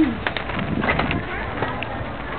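Bicycle rattling and clicking as it rides over a brick-paved alley, irregular small knocks over a steady background noise, with the end of a drawn-out call fading just at the start.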